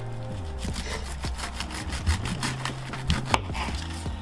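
Kitchen knife sawing through the tough, fibrous base of a pineapple crown on a plastic cutting board, in quick repeated strokes.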